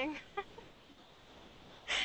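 A pause in conversation heard over an online call: the tail of a spoken word, a short breathy vocal sound like a stifled laugh about half a second in, then faint line noise until a voice comes back at the very end.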